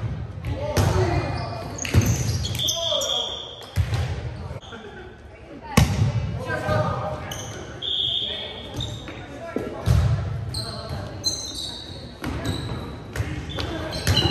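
Indoor volleyball rally: sharp hits of hands and forearms on the ball, about four in all, with sneakers squeaking in short high chirps on the hardwood floor and players calling out, everything echoing in the large gym.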